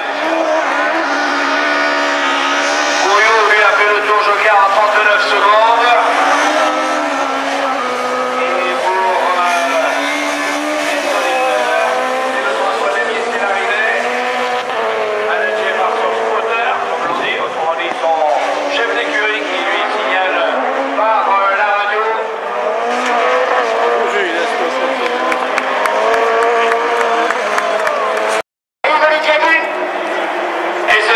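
Rallycross car engine revving hard and changing gear, its pitch rising and falling over and over, with some tyre squeal. The sound cuts out for about half a second near the end.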